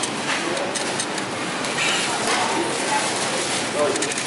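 Steady supermarket background noise with voices, at a self-checkout.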